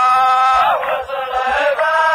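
Men's voices chanting a line of muhawara poetry in the murad style, in long held notes that bend in pitch.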